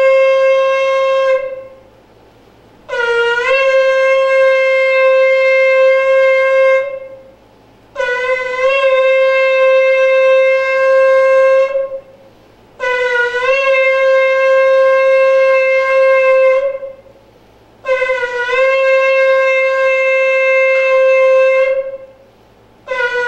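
A shofar (ram's horn) is sounded in a series of long blasts, part of a set of seven. Each blast is about four seconds long: a short upward scoop in pitch, then one steady note, with about a second's pause between blasts. One blast ends near the start, four full blasts follow, and another begins at the very end.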